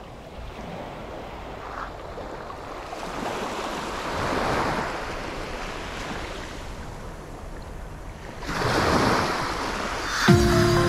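Small waves washing onto the shore of a calm sea, swelling about four seconds in and again near the end.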